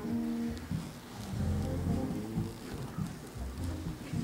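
Electric keyboard playing slow background music with held notes.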